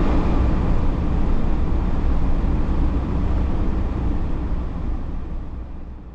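A car driving along a road: a loud, steady low rumble of engine and road noise that fades out over the last couple of seconds.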